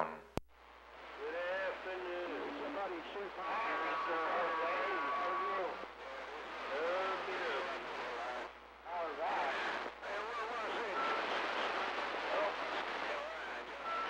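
CB radio receiver audio: faint, garbled voices of distant stations under a steady hiss of static, with a steady whistle for about two seconds near the start. A single click just after the start.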